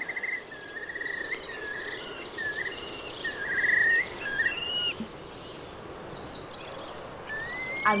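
Birds singing: a run of short clear whistles and trills, busiest in the first four or five seconds, then a quieter stretch and a rising whistle near the end, over a faint steady outdoor background.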